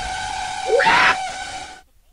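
Jumpscare sound effect: a loud blast of harsh noise with a steady shrill tone, peaking in a scream about a second in, then cutting off suddenly shortly before the end.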